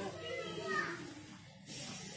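Faint voices in the background, a child's voice among them, with a short hiss near the end.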